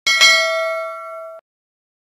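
Notification-bell sound effect: a small bell struck twice in quick succession, its ringing tones fading for about a second before cutting off suddenly.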